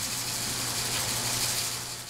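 Small brassica microgreen seeds (kale and cabbage types) pouring from a paper seed packet into a clear plastic shaker cup. It is a steady, fine high hiss of many tiny seeds streaming onto the plastic and onto each other.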